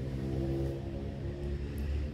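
A motor running steadily nearby: a low, even hum with a rumble underneath.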